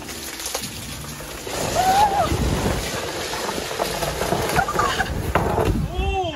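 A person sliding down an ice slide: a rushing scrape of clothing on ice that swells about a second and a half in and carries on, with a brief voiced cry about two seconds in.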